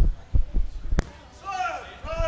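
A few dull low thumps in the first moments and one sharp click about halfway, followed by a brief faint voice near the end.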